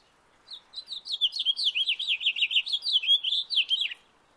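House finch singing one rapid, warbling song about three seconds long, ending in a falling note.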